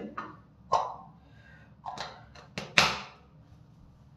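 Gillette ProGlide cartridge razor in use: about five brief, sudden strokes, the loudest about three quarters of the way in.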